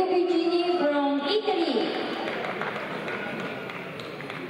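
A man's voice over a public-address system in a large hall, drawing out long words. It stops with a falling tone about two seconds in, leaving a steady, quieter hall background.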